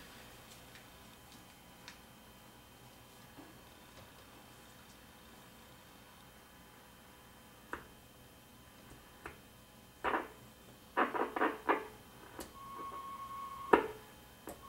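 Clicks from the front-panel knobs and switches of a 1976 Sears Road Talker 40 CB radio worked by hand: a few single clicks after a quiet stretch, then a quick run of them. A steady high tone sounds for about a second near the end.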